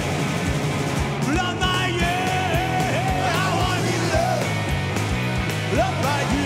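A live rock band playing an instrumental passage: a steady kick-drum pulse, bass and rhythm guitars, and over them a lead line with bending notes.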